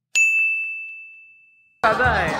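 A single bright ding, like a bell sound effect: one high tone struck once and fading away over about a second and a half, with a few faint ticks just after the strike. Music and crowd noise cut in near the end.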